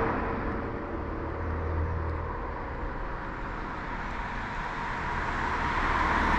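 Outdoor rushing noise with a low rumble, steady and without distinct events, swelling slightly near the end.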